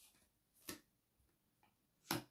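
Near silence broken by a single soft click about two thirds of a second in, then a couple of fainter ticks: oracle cards being handled as a card is drawn and laid on the spread.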